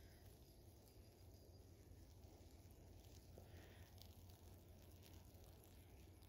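Near silence: faint outdoor background with a low, steady rumble.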